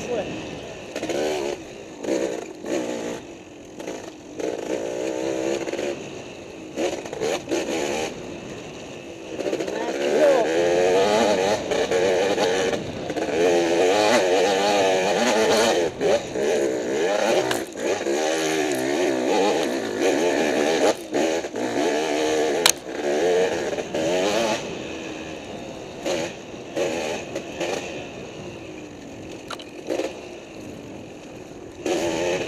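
Dirt bike engine on a trail ride, its pitch rising and falling again and again with the throttle, loudest through the middle stretch. Short knocks and clatters come through, with one sharp click a little after the middle.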